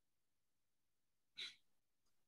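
Near silence, broken by one short, soft breath about a second and a half in.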